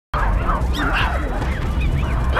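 A troop of gelada monkeys calling: many short, overlapping calls that rise and fall in pitch, over a steady low rumble.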